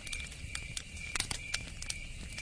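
Wood campfire crackling, with irregular sharp pops and snaps, over a steady high-pitched trill and a low rumble.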